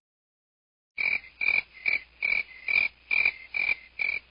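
Silence for about a second, then a rhythmic croaking call starts, repeating evenly at about two and a half croaks a second.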